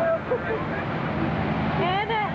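Steady low rumble of a moving vehicle heard from inside, with voices talking briefly at the start and again near the end.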